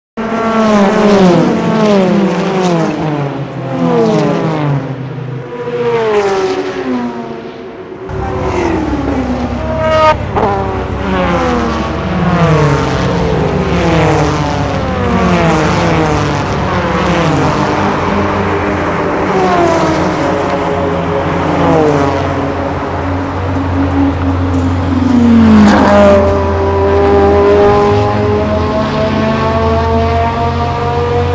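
Ferrari sports-car engines revving and driving past one after another, each pitch sliding down as it goes by. From about eight seconds in a steady low engine hum sits underneath, and near the end one engine close by revs up with a steadily rising pitch.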